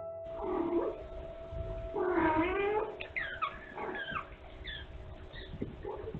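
Kittens mewing: a longer meow about two seconds in, then a run of short, high mews over the next couple of seconds.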